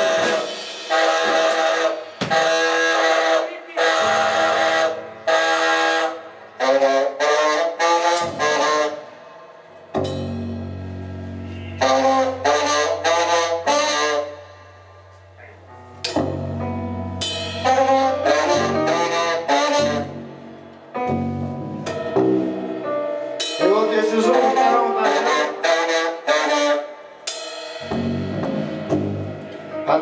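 Live band music led by a saxophone, playing short stop-start phrases of chords broken by brief pauses. A low held note sounds from about ten to sixteen seconds in.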